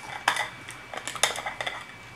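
Small plastic loose-powder jar (Missha Airy Pot) being handled and its lid opened: a string of light plastic clicks and taps, one cluster about a quarter second in and a quicker run of clicks from about a second in.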